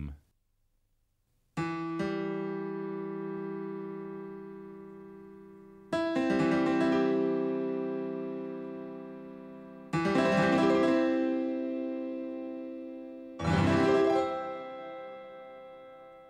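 Sustained electronic keyboard chords triggered through a Soundbeam, four of them about four seconds apart, each starting suddenly and slowly fading. They follow a second or so of silence at the start.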